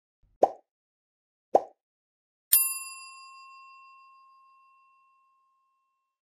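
End-screen animation sound effects: two short pops about a second apart, then a single bell ding that rings out and fades over about two and a half seconds.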